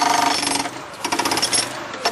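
Powered demolition hammer driving its bit into a concrete slab, a rapid, even hammering with a steady ringing tone. It breaks off briefly just under a second in and starts again more quietly.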